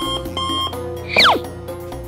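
Two short electronic beeps, then a quick falling whistle, added as comedy sound effects over background music.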